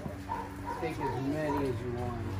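A dog barking about five times in quick, even succession, with people's voices around it.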